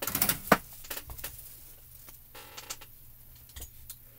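A handful of light clicks and knocks as a heat tool is picked up and handled over a craft mat, the loudest about half a second in, with a few fainter ticks near the end; the heat tool is not running.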